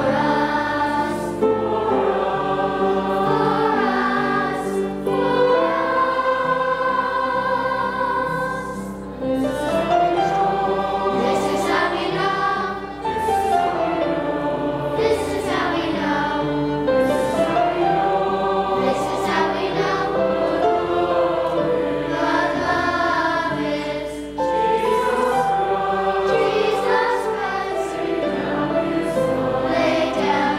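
A congregation singing a hymn together, many voices holding long notes, with short breaks between phrases.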